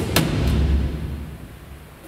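A broadcast transition sound effect: a sudden hit followed by a low boom that fades away over about two seconds.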